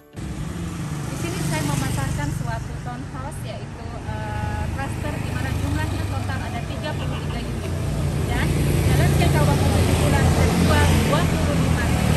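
Street traffic with motor scooters and cars passing close by, a steady engine rumble that grows louder in the second half as more scooters come near.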